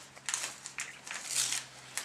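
Gift wrapping paper being torn open and crinkled by hand, in a few short rips, the loudest about one and a half seconds in.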